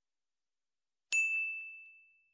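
A single bright bell-ding sound effect about a second in, struck once and ringing out as it fades.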